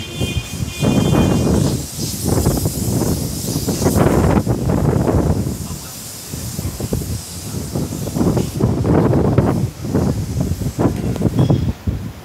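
Strong, gusty wind buffeting the phone's microphone in uneven surges, with the hiss of tree leaves rustling in the gusts.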